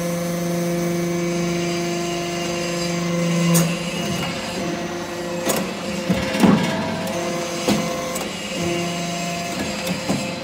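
Hydraulic scrap-metal briquetting press running: a steady pump hum whose strongest low tone drops away about three and a half seconds in as the press cycles. A few sharp metallic knocks follow in the middle of the stretch, as compacted metal-chip briquettes are pushed along the discharge chute.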